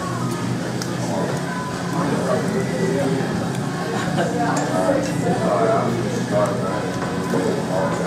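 Indistinct talking from people nearby over a steady low hum.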